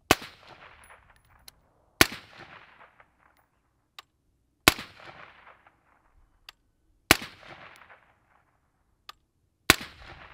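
Five single shots from a suppressed 10.5-inch LMT AR-15 firing 55-grain 5.56 ammunition, about two and a half seconds apart, each followed by a fading echo.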